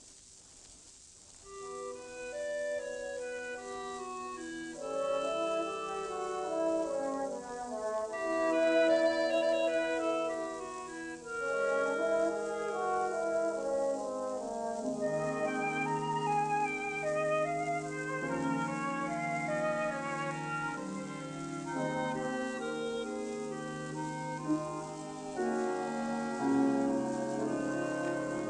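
A 1935 recording of a small orchestra of woodwinds, brass, harp and piano playing a slow passage of held, overlapping notes. It is nearly silent for the first second or two, then the notes build, over a faint steady hiss from the old recording.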